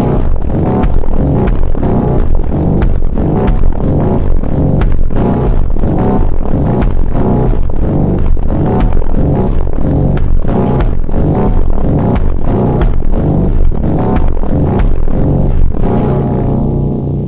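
Loud electronic phonk music with heavy bass and a steady, driving beat.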